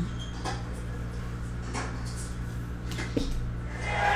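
A steady low hum with a few faint clicks and taps as plastic toploader card holders are handled and set down on a mat.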